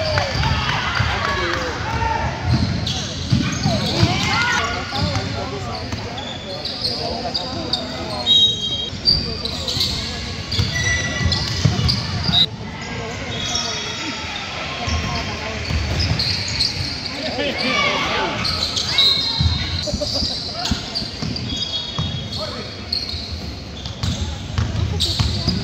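Sounds of a basketball game in a large gym: the ball dribbling on the court, short high sneaker squeaks, and spectators' voices and shouts, with a laugh near the end.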